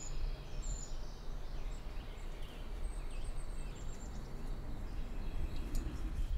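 Forest ambience: a steady low rumble with a few faint, short high-pitched bird chirps.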